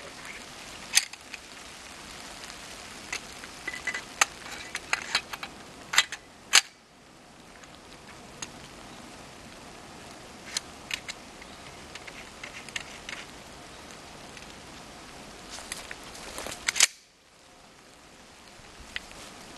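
Scattered sharp metallic clicks and knocks from a 12-gauge shotgun being handled and worked, with a few louder single clicks among fainter ticks. There is no shot: the primer-only .223 cartridge in the barrel insert does not fire.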